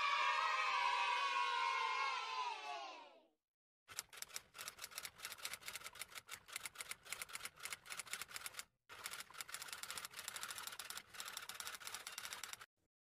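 A drawn-out pitched sound slowly falls in pitch and fades out after about three seconds. After a short gap comes a long run of rapid, irregular clicking like typewriter keys, with a brief break about nine seconds in.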